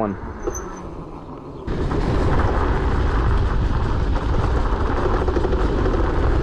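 Wind noise on the rider's camera microphone while riding an electric motorcycle, with rolling noise from the bike. It jumps suddenly from a low level to a loud, steady rush about a second and a half in and stays there.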